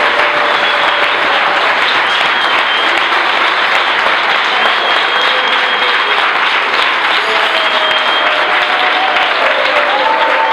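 Congregation applauding steadily and loudly, greeting the newly engaged couple.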